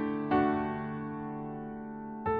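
Slow, gentle piano music: a new chord is struck about a third of a second in and left to ring and slowly fade.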